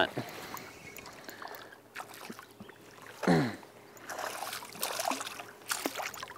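Hooked crappie splashing at the water's surface as it is reeled to the side of the boat. About three seconds in there is a short exclamation from the angler, falling in pitch, which is the loudest sound.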